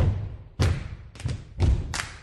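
A run of deep, sharp thumps, about two a second and unevenly spaced, each dying away quickly. They are percussive hits from a stage performance.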